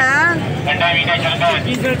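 Men's voices talking and bargaining over a steady low din of street traffic.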